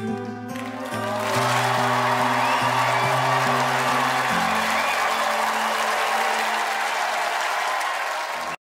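A song ending on long-held low notes while a studio audience breaks into applause, which swells about a second in. The music drops away after about four seconds and the applause carries on.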